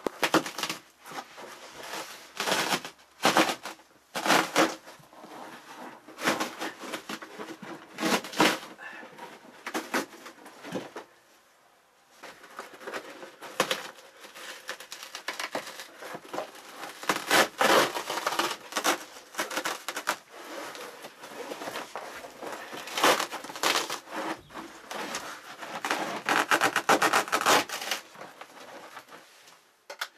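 Glued-down indoor-outdoor carpet being pulled up by hand, tearing loose from its carpet adhesive in a run of irregular ripping sounds, with a brief pause about eleven seconds in.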